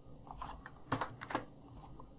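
Computer keyboard keystrokes: a few irregular, separate key clicks as code is typed and edited.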